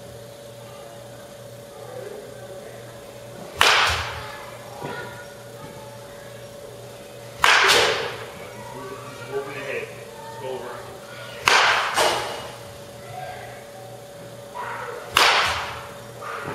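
Baseball bat striking pitched balls in a batting cage: four sharp cracks about four seconds apart, each with a short ring-out, one followed half a second later by a second knock. A steady hum runs underneath.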